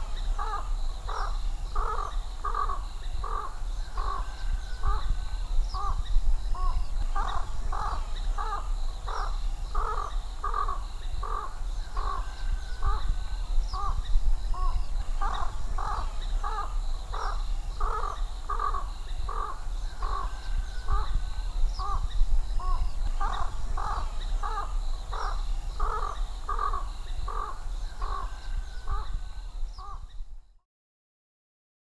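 A continuous run of harsh bird calls, about two a second and evenly paced, over a steady low hum.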